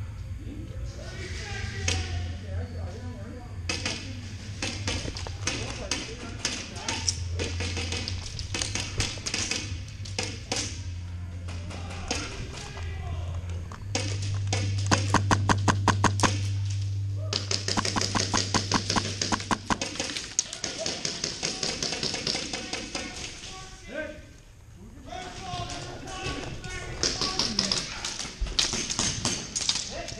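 Airsoft gunfire across a large indoor hall: many sharp cracks and taps of shots and BB hits, with a run of evenly spaced shots about three a second midway and dense clatter after it. A steady low hum underlies it all.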